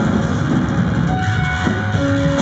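Live noise-rock band playing loud: a thick wall of distorted electric guitar noise over a heavy low rumble, with a couple of held high tones coming in about a second in.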